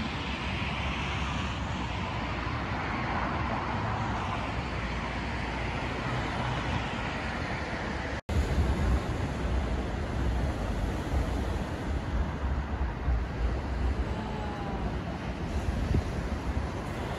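Steady outdoor background of road traffic with wind on the microphone. The sound cuts off for an instant about eight seconds in, and after that the low wind rumble is heavier.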